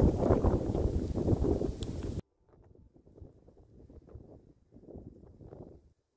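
Strong wind buffeting the microphone in a loud rushing roar that cuts off abruptly about two seconds in. After that, only softer, intermittent gusts of wind noise are heard.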